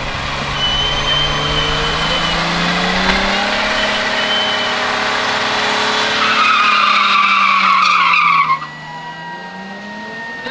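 A car doing a burnout: the engine revs hard while a spinning tyre squeals on the asphalt. The squeal is loudest in its last two seconds and cuts off suddenly about eight and a half seconds in.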